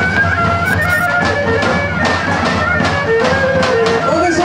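Bulgarian folk music: a bagpipe melody over a steady drone, with short percussive strikes.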